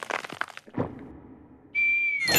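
Trailer sound effects: a quick run of sharp cracks and knocks, then a few softer knocks dying away, and near the end a held high whistle tone that begins to slide down in pitch.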